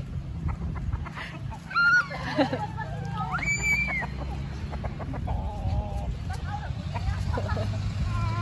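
A rooster calling and clucking, with a high call held for most of a second about three and a half seconds in, and a child's voice among the calls.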